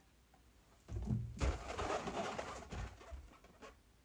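Rubbing and rustling of a latex balloon handled close to the microphone, starting about a second in and lasting about two and a half seconds.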